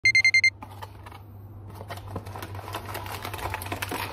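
Alarm clock beeping: a rapid burst of about five loud, high electronic beeps in half a second that then cuts off. After it come a steady low hum and small clicks and rustles of things being handled.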